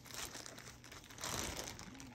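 Crinkling, rustling handling noise in two spells: a short one just after the start and a longer one a little past the middle.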